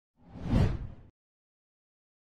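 Whoosh sound effect of a video transition: one swish with a deep low body that swells and fades over about a second, shortly after the start.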